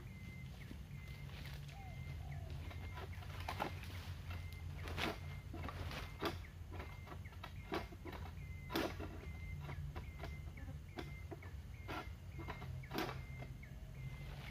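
Several sharp cracks and rasps at irregular moments as a long-poled egrek sickle hacks at oil palm fronds in the crown. A small bird repeats a short high chirp at a steady pace throughout, over a low steady hum.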